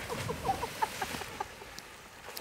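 A person jumping into harbour water: a splash right at the start, then the wash of the water fading away over about a second and a half.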